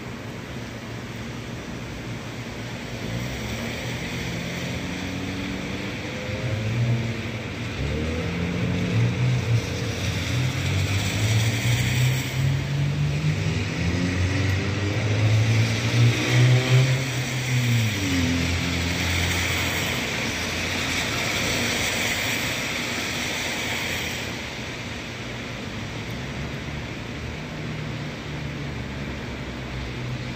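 A passing engine swells over about twenty seconds, loudest about halfway through, its pitch sliding down as it goes past, then fades. Underneath, a steady hiss of rain.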